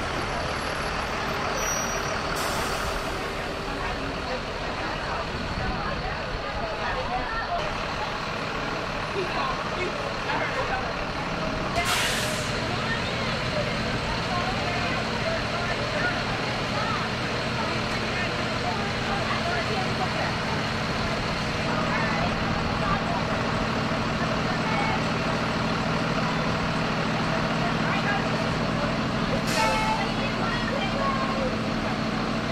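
Thomas Saf-T-Liner C2 school buses idling, with voices over them and a short hiss of air brakes about twelve seconds in.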